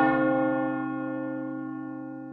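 A single deep bell toll, struck just before and ringing on, its many overtones fading slowly.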